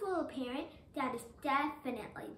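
Speech only: a child's voice delivering a spoken monologue.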